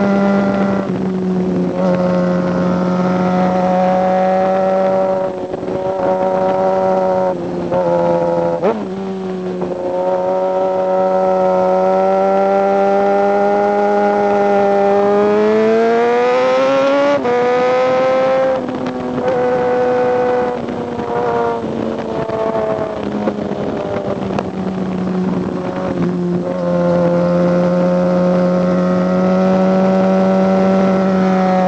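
A 2007 (K7) Suzuki GSX motorcycle's four-cylinder engine running at a steady mid-range pitch while the bike is ridden through bends, with brief throttle lifts. About halfway through, the revs climb under acceleration and drop sharply at a gear change, then fall away slowly as the bike slows before picking up again near the end.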